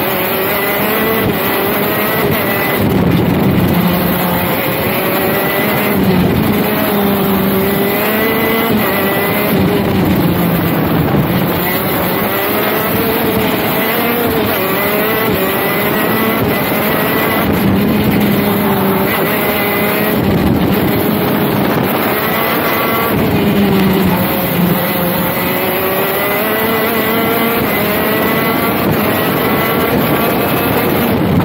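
KZ shifter kart's 125 cc two-stroke engine at racing speed, its revs climbing and dropping again and again as it accelerates through the gears and slows for corners.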